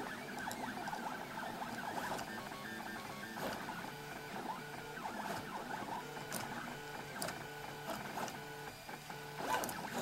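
MendelMax 3D printer printing: its stepper motors whine in thin tones that change pitch every fraction of a second as the print head and axes move, with a few faint ticks.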